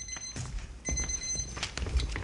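Electronic timer alarm beeping, a high steady beep sounding twice, which signals that the cross-examination time is up. Footsteps knock on the wooden stage between the beeps.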